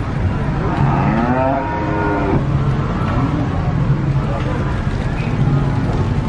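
A cow mooing: one long moo about a second in that rises and falls in pitch, followed by a short lower call.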